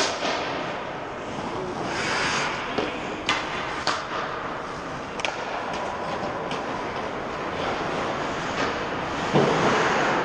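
Ice hockey play: skate blades scraping on the ice with a run of sharp clacks of sticks and puck, and a louder scrape just after nine seconds.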